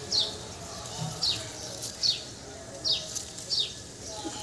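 A small bird calling repeatedly, with five short high chirps that each fall in pitch, spaced roughly three-quarters of a second apart.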